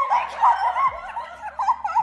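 A young woman's high-pitched, wavering squeals and whimpers, half-crying, an overwhelmed emotional reaction to an admission decision.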